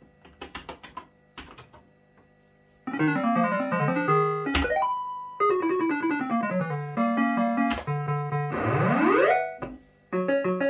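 Electronic sound chip of a 1987 JPM Hot Pot Deluxe fruit machine, an MPS2 model. A few sharp clicks are followed, about three seconds in, by a loud beeping tune of quick falling and rising note runs, one held note and a rising sweep near the end. The tune plays as the nudge feature lights up.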